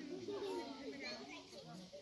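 Several children's and people's voices chattering and overlapping, with no clear words.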